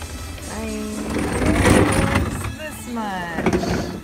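Reverse vending machine taking in a plastic bottle: a loud, unpitched machine noise of about a second, starting about a second in, with a voice before and after it.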